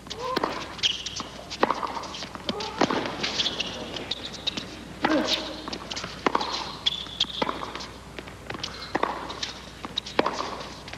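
Tennis rally on a hard court: the ball is struck back and forth by the racquets roughly every second or so, with short high squeaks of tennis shoes between the strikes.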